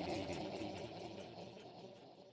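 Fading echo tail of a processed intro logo sound, dying away steadily over the two seconds right after a spoken channel ident.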